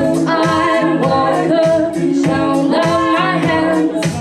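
A woman's voice singing in several layered harmony parts, with no clear instrument under it.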